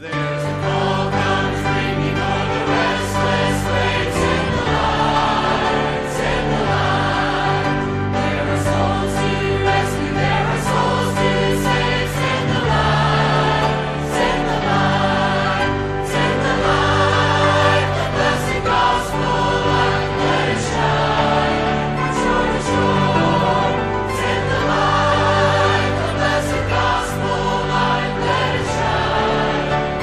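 Background music: a choir singing a devotional song over sustained accompaniment.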